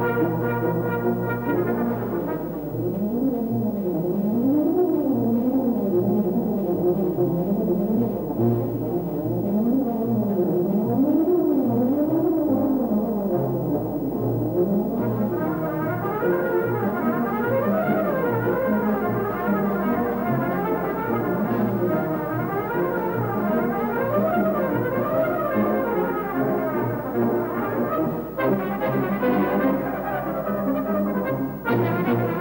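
Brass band playing a fast piece in which a tuba plays quick runs up and down over sustained band chords. The runs sit low at first and move higher from about halfway.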